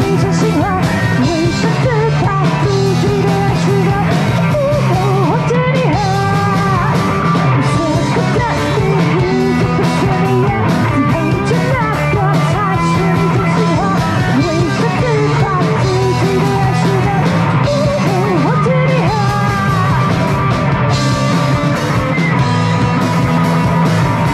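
Live alternative rock band playing: electric guitars and drum kit, with a woman's lead vocal.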